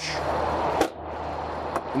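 An RV's exterior storage compartment door being shut, latching with one sharp knock a little under a second in, over a steady low hum.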